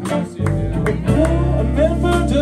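Live blues band playing: electric guitar over drums, bass guitar and keyboards, with the bass and low end coming in strongly about half a second in.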